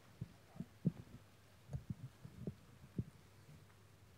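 Irregular low thumps and knocks of microphones being handled as their stands are adjusted, over a faint steady hum from the sound system.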